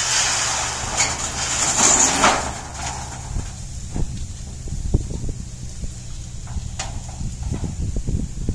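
Corrugated metal roofing sheets scraping and rattling for the first couple of seconds as one is dragged off the pile, then a few separate light knocks as sheets are handled and laid down.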